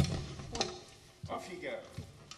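A single sharp knock at the very start, then a hush with a few faint, low words.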